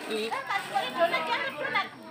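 Background chatter: several people talking at once, softer than close speech.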